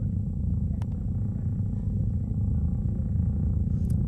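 A low, steady rumbling drone from the horror film's soundtrack, holding level and cutting off abruptly at the end.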